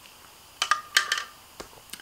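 Sipping a drink through a plastic straw: two short slurps with mouth clicks about half a second apart near the middle, then a couple of faint ticks.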